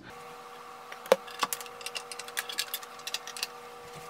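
Scattered light clicks and ticks from speaker cables and the Lepai amplifier being handled while the speakers are swapped, the sharpest click about a second in, over a faint steady hum.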